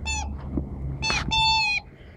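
A rubber chicken squeeze toy squeaking as a dog bites down on it. It gives three squeals: a short one falling in pitch at the start, a brief one about a second in, and a longer, steady and louder one near the end.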